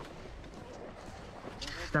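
Faint outdoor background with distant, weak voices, ending in a single spoken word.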